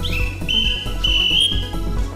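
A whistle blown in three blasts, the first sliding down in pitch as it starts, in time with background dance music that has a steady beat.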